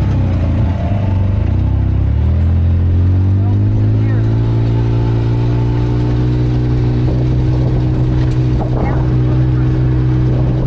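Side-by-side UTV engine heard from the seat. The engine note drops over the first two seconds as the throttle eases, then climbs again and holds a steady pitch as the machine cruises the dirt trail.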